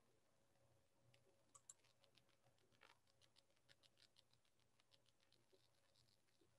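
Near silence with faint, irregular clicking of a computer keyboard being typed on, several keystrokes a second, starting about a second in and thinning out near the end.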